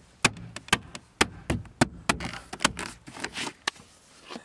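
Hard plastic interior trim panel being pushed and tapped into place, its clips catching: a run of about ten sharp clicks and knocks at uneven intervals, with short scraping rubs of plastic between them.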